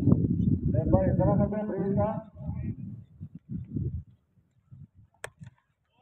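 Low rumble of wind on the microphone under a distant raised voice calling, fading to quiet after about four seconds. About five seconds in comes a single sharp crack of a cricket bat striking the ball.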